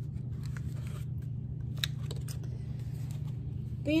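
A picture book being handled and opened, a few short soft clicks and rustles of its cover and pages, over a steady low room hum.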